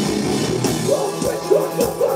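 Metallic hardcore band playing live, heard from the crowd: distorted guitars, bass and drums. About half a second in, the held, dense guitar sound gives way to a choppy riff of short notes that bend in pitch several times a second, punctuated by drum hits.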